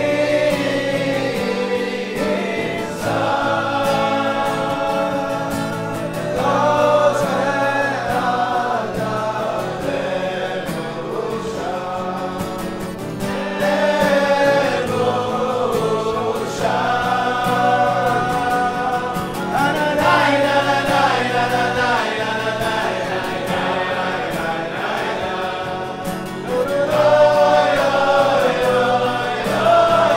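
A group of men singing a Chassidic niggun together in unison, with an acoustic guitar strumming along underneath.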